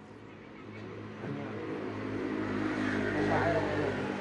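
A motor vehicle's engine running with a steady hum that grows louder over about three seconds, then eases slightly near the end.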